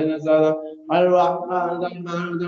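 A voice chanting a litany of Arabic names of the Prophet Muhammad in a steady, sing-song recitation, breaking off briefly a little past halfway through before carrying on.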